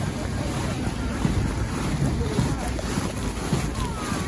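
Wind buffeting the microphone as a steady rushing noise while walking outdoors, with faint voices in the background.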